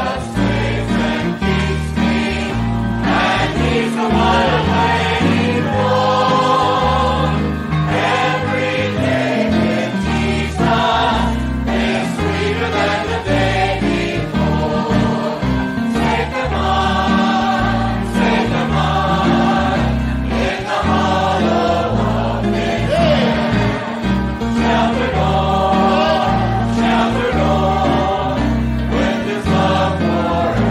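A choir singing a gospel hymn with instrumental accompaniment, the bass notes shifting with the chords.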